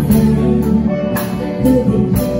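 Live band music with a steady beat: drum kit with regular cymbal strokes, guitar and keyboard.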